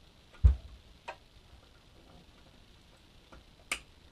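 Handling sounds of a SATA data cable being plugged into a hard drive inside a PC tower: a dull thump about half a second in, a light click about a second in, and a sharp click near the end as the connector goes home.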